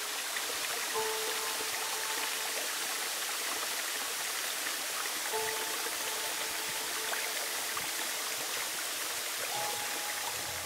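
Steady rush of a forest waterfall and stream, with soft, held music notes over it that enter about a second in, again a little after five seconds, and once more near the end.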